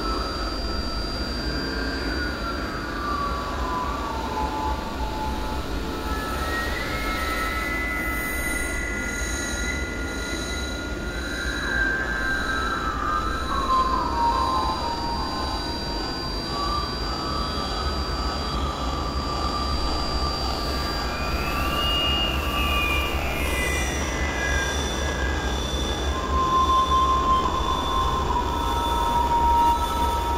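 Experimental synthesizer drone: a steady low rumble under thin, held high tones, with whistling pitched tones that slide slowly down, or rise and fall, every several seconds, like squealing train wheels.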